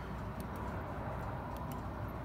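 Low, steady background hum with a few faint clicks as a handheld digital multimeter is switched back on and handled.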